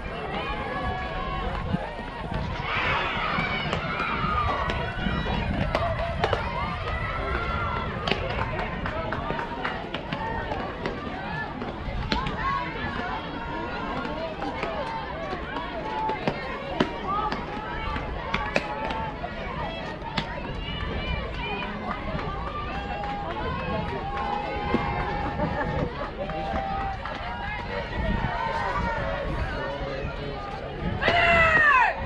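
Distant voices of softball players and spectators calling out and chatting across the field, with scattered sharp ticks and a steady low rumble underneath.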